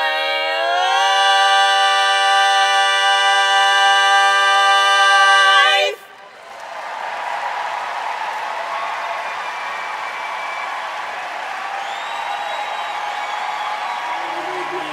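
Women's barbershop quartet singing a cappella, holding a final chord that steps up in pitch about a second in and cuts off together about six seconds in. The audience then applauds and cheers, with a few whoops.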